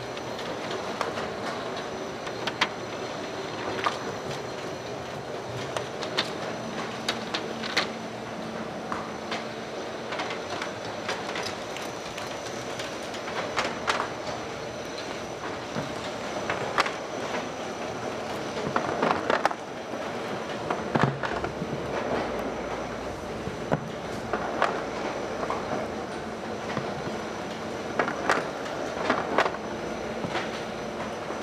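Mateer Burt AU404 roll-through glue wrap labeler running: a steady mechanical running noise from its belts and rollers, dotted with irregular clicks and clatters. The clatter thickens about two-thirds of the way through and again near the end.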